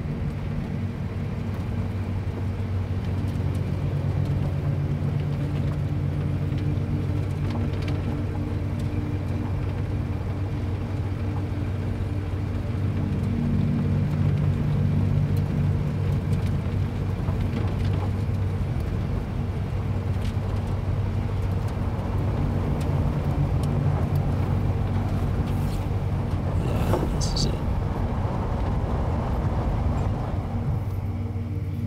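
A truck engine running steadily, heard from inside the cab as a low drone that rises a little in places. A brief higher-pitched sound comes near the end.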